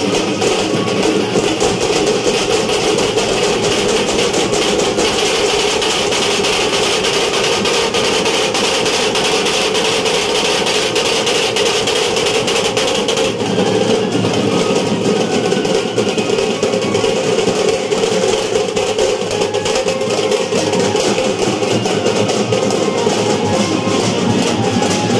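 Loud music with fast, continuous drumming that changes character about halfway through.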